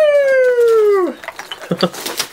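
A long high-pitched human squeal of excitement, held for about a second and sliding steadily down in pitch, followed by a short spoken "okay" near the end.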